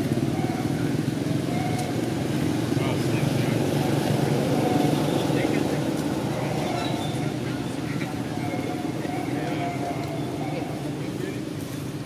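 A steady low motor hum with indistinct voices over it.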